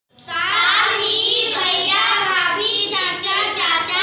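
A group of young girls singing together in unison, starting abruptly at the beginning.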